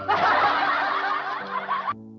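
About two seconds of laughter that starts suddenly and cuts off abruptly, over a steady piano backing track.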